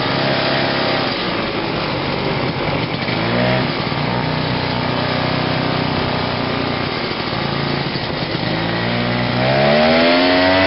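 1969 Ski-Doo Olympic 320's single-cylinder Rotax two-stroke engine running under way on the trail. The revs ease off about a second in and climb again around three seconds, then drop again late on and pick back up near the end.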